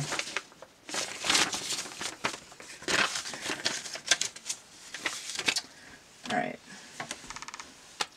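A folded paper instruction pamphlet being handled and folded back up: irregular paper rustling and crinkling, then a quick run of fine clicks near the end.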